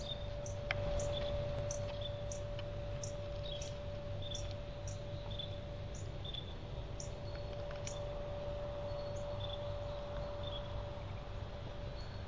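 Outdoor ambience of insects chirping in an even rhythm, about one and a half chirps a second, over a steady hum and low rumble.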